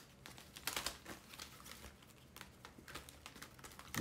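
Stiff card sticker sheets being shuffled and handled, with light rustles and scattered small taps and clicks of card against card.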